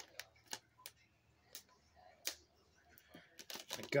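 Scattered light clicks and taps at irregular intervals as a small cardboard box of dental floss picks is opened and handled.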